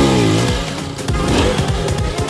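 Motorcycle engine revving, its pitch rising and falling, mixed with background music that has a steady beat.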